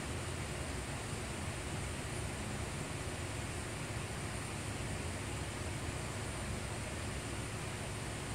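Steady hiss of background noise with a faint low hum: room tone.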